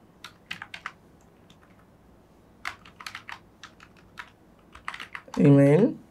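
Typing on a computer keyboard: sharp key clicks in short, irregular runs with gaps between them. A brief spoken word comes near the end.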